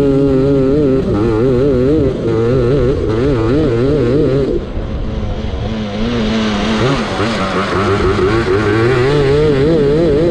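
Racing lawnmower's engine running under throttle over a bumpy grass track, its pitch wavering up and down. It eases off about four and a half seconds in, then picks up again from about six seconds.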